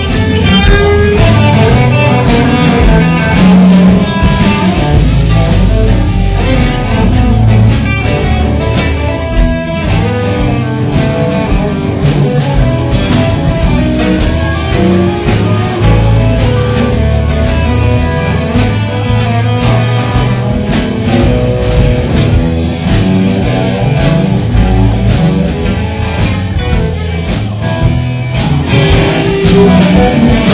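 Live blues band playing an instrumental passage between sung verses, with guitar to the fore over a steady beat.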